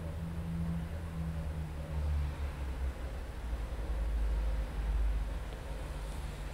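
Low rumble with a faint steady hum and no speech, swelling slightly twice.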